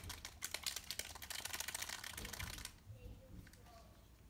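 A paint dropper bottle being handled: a quick run of small plastic clicks and rattles for about two and a half seconds, then fainter sounds.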